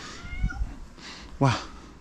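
A house cat meowing: faint thin calls in the first half second, then one louder meow that falls in pitch about one and a half seconds in. A soft low thump comes near the half-second mark.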